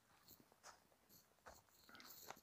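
Near silence, with a few faint footsteps on dry leaf litter.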